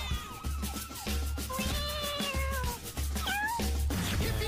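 A cat meowing over upbeat music with a steady bass beat: one long meow about halfway in and a short rising meow near the end.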